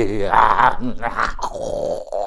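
A man's voice speaking, with a drawn-out, wavering syllable at the start that the recogniser did not write down.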